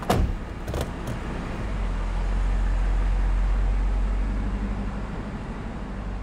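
Heavy car door shutting with a solid knock, then the 6.9-litre naturally aspirated V8 of a 1980 Mercedes W116 S-Class running, its low rumble swelling for a couple of seconds and then easing off.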